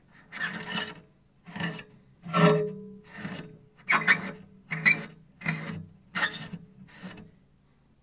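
A cloth scrubbed hard along cello strings to strip off built-up rosin, in about nine rasping strokes a little under a second apart. The rubbed strings give out low scratchy tones under the noise, and one higher tone rings briefly a couple of seconds in.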